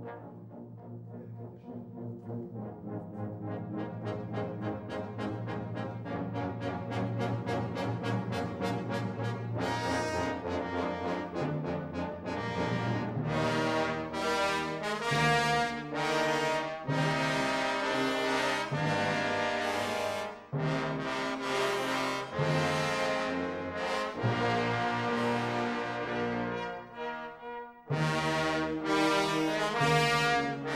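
Trombone choir with tuba playing sustained chords in parts, swelling from soft to loud over the first ten seconds, then moving in loud, separately sounded chords with brief breaks.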